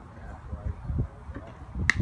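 Low rumble of wind on the microphone at an outdoor ball field, with a few soft knocks and one sharp click near the end.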